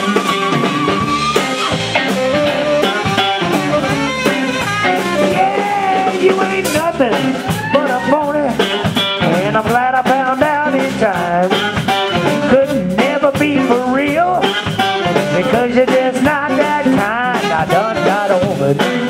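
A live blues band playing: electric guitar, tenor saxophones, bass and drum kit. A held, wavering saxophone note ends about a second and a half in, and the guitarist sings lead over the band later on.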